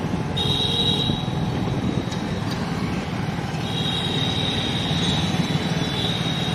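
Steady road and engine noise of travel through town traffic. A high-pitched squeal of several close tones sounds briefly near the start and again from about halfway on.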